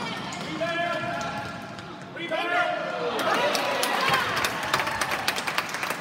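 Youth basketball game sounds in a gym: spectators and players calling out, one loud shout about two seconds in, then a basketball bouncing and sneakers squeaking on the court floor in the second half.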